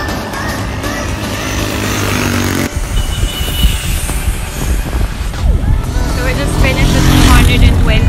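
Background music for the first few seconds, then a sudden switch to heavy wind rumble on a phone microphone carried by a rider cycling along a road. A woman's voice begins under the rumble near the end.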